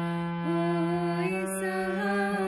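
Harmonium playing a slow melody: a low note held under upper notes that step to new pitches about half a second in and again a little after one second.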